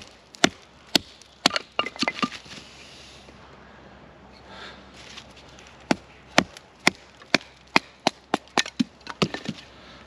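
Wooden baton striking the spine of a British Army survival knife, driving the blade down through a pine log to split kindling: sharp knocks about twice a second, stopping for about three seconds midway, then starting again.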